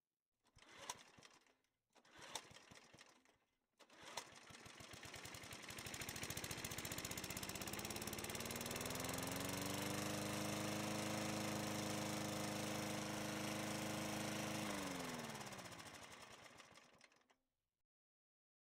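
Three short sounds about a second and a half apart, then a small motor with a rapid pulsing beat. The motor speeds up over several seconds, runs steadily, then winds down, its pitch falling, and stops near the end.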